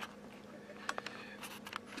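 Faint handling noise from a plastic box being turned in the hand: a few soft clicks about a second in and again near the end, over a steady low hum.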